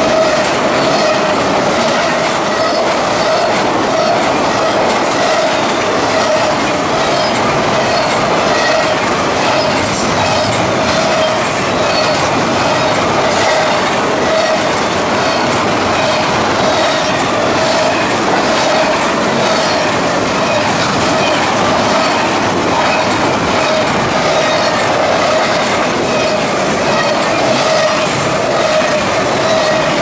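Norfolk Southern double-stack intermodal freight train's well cars rolling past at speed: a loud, steady rumble and rattle of steel wheels on rail, with a steady ringing wheel squeal running through it.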